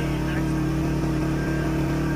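Motor vehicle engine running at a steady speed while driving, a constant even drone with no change in pitch.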